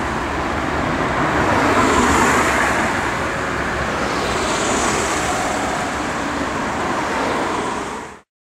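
Road traffic: cars passing on a town street, a steady noise of engines and tyres that swells about two seconds in and again about five seconds in as vehicles go by.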